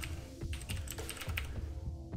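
Computer keyboard typing: a quick, irregular run of key clicks as a password is entered, over quiet background music.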